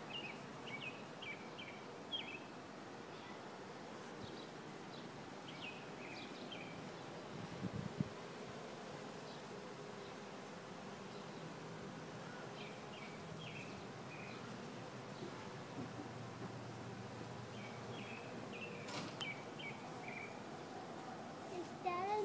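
Honeybees buzzing around their hive, a faint steady hum. Short high chirps come in groups every few seconds over it.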